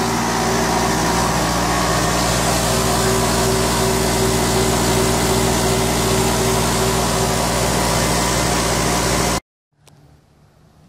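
Electric air compressor running steadily and loud, a constant motor-and-pump hum, working to keep up with the air demand of a sandblaster. It stops abruptly near the end.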